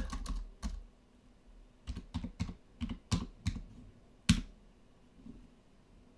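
Computer keyboard keystrokes, short clicks in small irregular groups, with one louder keystroke a little after four seconds in.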